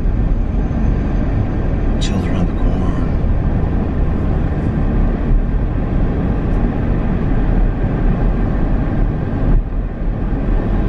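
Steady road and engine noise of a car driving at speed, heard from inside the cabin: a constant low rumble under a broad hiss.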